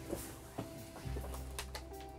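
Quiet background music with sustained tones over a low bass, with a few faint clicks in the first second.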